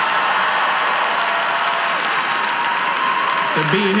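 Large audience applauding steadily, with a man's voice resuming near the end.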